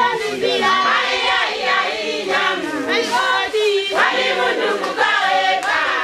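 A group of voices singing together, several voices overlapping on a bending melody without a pause.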